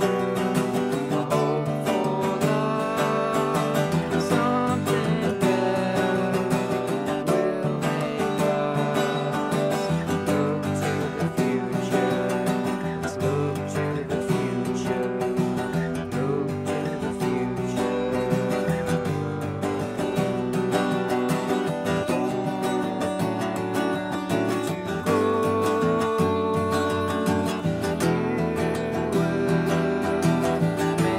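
Acoustic guitar strummed in a steady rhythm, playing a song.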